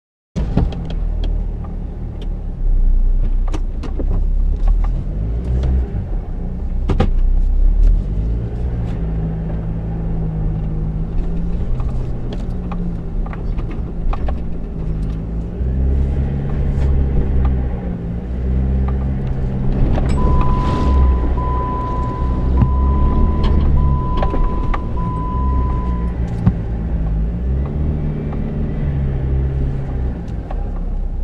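Off-road 4x4's engine driving over sand and through bush, its revs rising and falling, with scattered clicks and knocks from the vehicle. About twenty seconds in, five short electronic beeps sound at one pitch.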